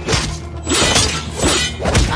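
Fight-scene sound effects from a TV drama soundtrack: several crashing hits with glass shattering, over a music score.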